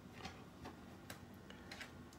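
A handful of faint, sparse clicks of a student flute's keys being worked by hand, the pads tapping shut on the tone holes.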